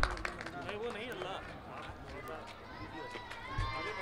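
Faint, indistinct voices chattering off the microphone, with a few light clicks in the first second.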